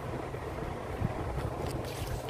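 Steady low rumble of background noise with no speech.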